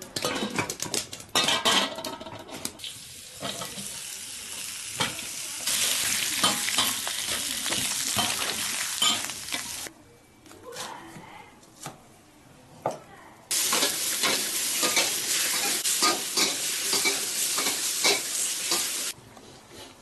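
Stir-frying in a black iron wok: hot oil sizzling loudly while a metal spatula scrapes and knocks against the pan. Partway through, the frying gives way to a quieter stretch with a few knife chops on a wooden board, then the loud sizzle and stirring return.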